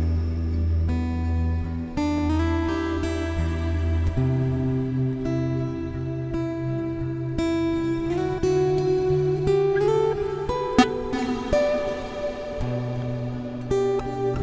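Solo steel-string dreadnought acoustic guitar fingerpicked in a slow, relaxing instrumental, with low bass notes ringing under plucked melody notes. One sharp percussive tap on the guitar sounds about three quarters of the way through.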